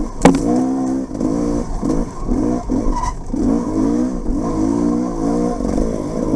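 Dirt bike engine revving up and dropping off over and over as the rider opens and closes the throttle, about once or twice a second. A single sharp knock comes just after the start.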